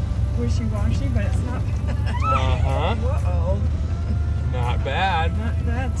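Toyota Tundra pickup fording a rocky creek: a steady low engine drone under the rush of the water. Voices call out twice, about two seconds in and again near the five-second mark.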